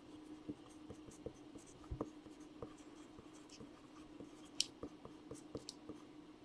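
Felt-tip marker writing on a clear plastic card holder: faint scratchy strokes and small clicks of plastic being handled, the sharpest click a little over four and a half seconds in. A steady faint hum runs underneath.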